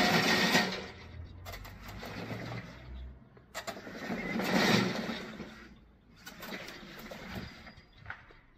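Brushless electric drive motors and rubber tracks of a remote-controlled tracked mowing robot as it drives and turns, the gasoline cutting engine not yet running. The sound rises and falls with each move and is loudest about four to five seconds in.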